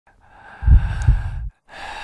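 A loud, breathy rush of air with a deep rumble underneath. It swells twice, cuts off abruptly about one and a half seconds in, then builds again.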